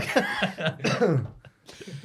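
Men laughing, the laughter dying down about a second and a half in, followed by a cough near the end.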